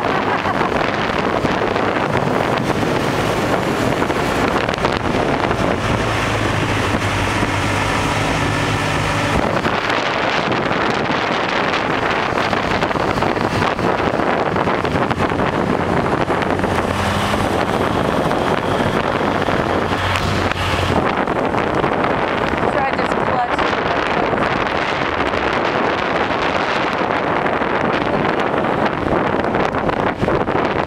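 Wind buffeting the microphone on a moving motorcycle, with the motorcycle's engine running underneath. The engine note comes through more clearly for a few seconds about a quarter of the way in, and again a little past the middle.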